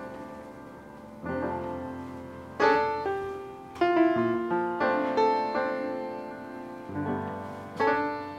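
Background piano music: chords and single notes struck about once a second, each fading away before the next.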